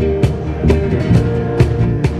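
A live band playing an upbeat instrumental passage: strummed acoustic guitar with electric guitar and bass, over a sharp, steady beat struck a little over twice a second.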